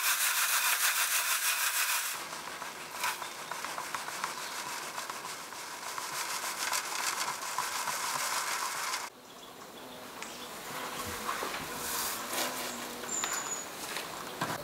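Dry celery seeds and chaff rustling as they are rubbed and sifted through a plastic sieve. The steady hiss drops in level about two seconds in, drops again about nine seconds in, and is then broken by a few light ticks.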